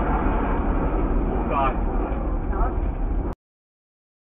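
Steady low rumble of vehicle and road noise, with voices faintly over it, cutting off abruptly a little over three seconds in.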